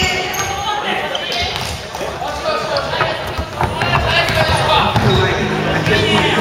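Basketball bouncing on a hardwood gym floor during play, with players' voices calling out in a large gym hall.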